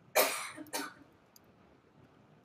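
A person coughs twice in quick succession: a sharp, louder first cough followed by a shorter second one.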